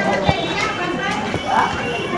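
Indistinct voices of several people talking in the background.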